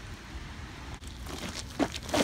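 Quiet outdoor air, then a shoe stepping onto an ice-glazed concrete sidewalk near the end as walking begins.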